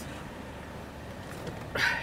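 2004 BMW 745i's 4.4-litre V8 idling steadily, heard from inside the cabin.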